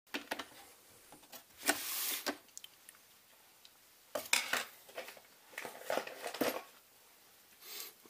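Hard plastic clicks, knocks and a short scrape as the top lid of a Xiaomi Mi robot vacuum is lifted open and the machine is handled.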